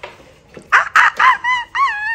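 About five short, high-pitched yipping calls in quick succession, starting just under a second in, each rising and falling in pitch.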